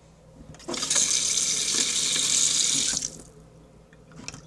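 Water tap turned on, running steadily for about two and a half seconds, then shut off.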